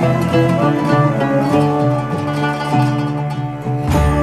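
Sufi instrumental music led by a plucked qanun playing a run of quick melodic notes over a low, sustained accompaniment.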